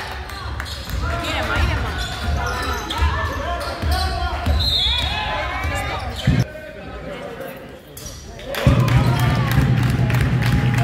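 Basketball bouncing on a wooden gym floor amid players' shouts, with a short, high referee's whistle about halfway through. The hall goes quieter after it, and a steady low hum sets in near the end.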